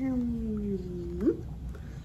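A woman imitating a cat with a long, drawn-out meow whose pitch slides slowly down, then flicks up and cuts off just over a second in.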